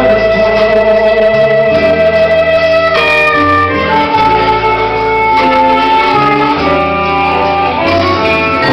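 Live blues band playing a mostly instrumental passage: a lead guitar holds long sustained notes, one held for about three seconds and then a higher one, over a steady bass line.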